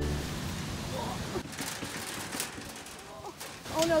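Steady outdoor noise with faint voices in the background and a few light clicks, then a woman's voice near the end.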